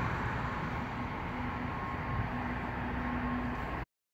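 Steady outdoor urban-industrial background noise, distant traffic with a faint machine hum, which cuts off abruptly just before the end.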